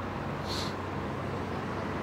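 Steady outdoor background noise at the pitch with a constant low hum, and a single brief high chirp about half a second in.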